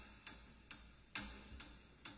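Faint, evenly spaced percussive ticks, about two a second: a drummer's count-in just before the worship band starts a song.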